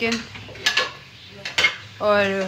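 A few sharp clinks of dishes and cutlery, one about two-thirds of a second in and a couple more about a second and a half in, two of them ringing briefly.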